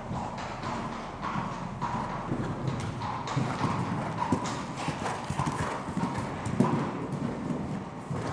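Hoofbeats of a horse cantering on soft, sandy arena footing, a run of dull strikes that grows louder through the middle as the horse passes close.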